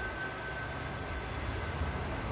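Low, steady background rumble with a faint hiss, with no clear event standing out.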